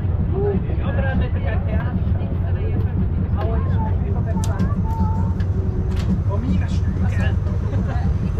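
Brienz Rothorn Bahn rack-railway train running, heard from an open carriage: a steady low rumble, with a few sharp clicks around the middle.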